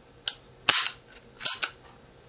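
Trigger group in an AR-style lower receiver being worked by hand, its hammer and trigger giving sharp metallic clicks: one click, then a longer rasping snap, then two quick clicks close together near the end.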